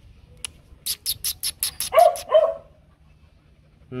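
Dog barking twice in quick succession, two short loud barks about two seconds in. They come just after a rapid run of about eight sharp clicks.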